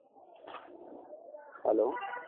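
A voice on a phone call says "hello" near the end, with a curving pitch, after about a second and a half of faint line noise.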